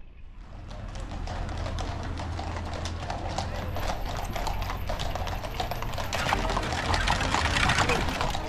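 Horses' hooves clip-clopping on a paved road as horse-drawn carriages pass, a quick, uneven run of hoof strikes that grows louder toward the end.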